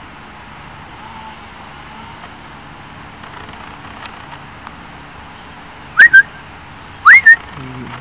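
A person whistling to call a dog: two loud two-note whistles about a second apart near the end, each a quick upward-sliding note followed by a short second note.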